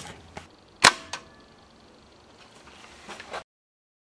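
A spring-powered Mars 86 air rifle fires a single 4.4 mm lead ball, one sharp shot about a second in, followed by a lighter click. It is a low-powered shot of about 200 feet per second.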